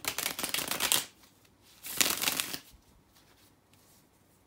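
A deck of tarot cards being riffle-shuffled twice. The first rapid flutter of cards lasts about a second, and a second, shorter one comes about two seconds in.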